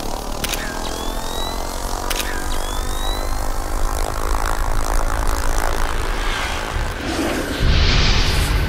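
Multirotor drone propellers humming with a steady, slightly rising pitch, as a sound effect over music. Two sharp clicks in the first half are each followed by a short rising chirp. A louder, deep swell of music comes in near the end.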